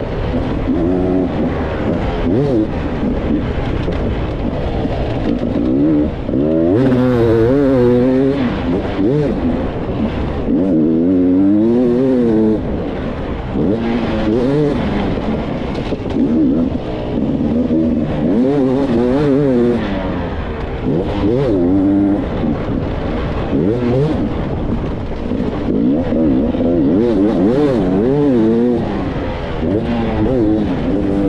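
Enduro motorcycle engine heard from the rider's onboard camera, revving up and dropping back again and again as it accelerates, shifts and slows around a dirt track. A hiss of wind on the microphone runs underneath.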